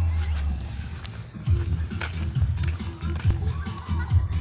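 Bass-boosted music from a mini sound system with E-box speakers, heard from a long way off: the deep bass beat carries strongly while the higher parts of the music come through thin. Footsteps on grass and dirt are close by.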